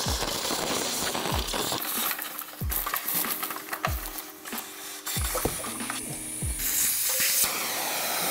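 Vacuum cleaner hose sucking dry leaves, rodent droppings and grime out of a car's front trunk, a steady hissing suction. A steady thumping beat of background music runs underneath.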